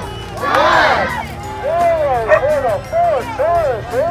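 A crowd shouting a countdown together, then a run of short, rising-and-falling shouts and calls about twice a second as the onlookers get excited.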